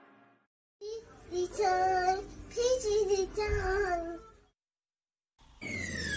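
A high-pitched voice sings a short phrase of about three seconds, like a vocal jingle. After a brief gap, a falling tone sweeps down near the end as the intro music begins.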